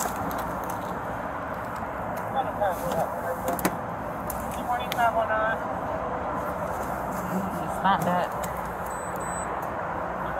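Indistinct voices in short snatches over steady outdoor background noise, with a sharp click about three and a half seconds in.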